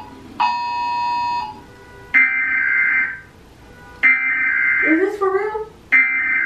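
Emergency Alert System broadcast tones from a TV: a steady alert tone of about a second, then three one-second bursts of the harsh two-tone digital header signal, roughly two seconds apart.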